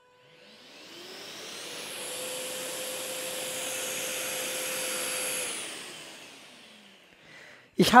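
Festool CTMC SYS I cordless extractor's 36-volt suction turbine switched on: its whine rises in pitch over about two seconds, runs steadily, then falls away and fades as the motor winds down.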